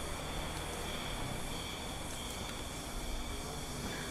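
Steady outdoor background noise: an even low rumble with faint steady high tones above it, and no distinct events.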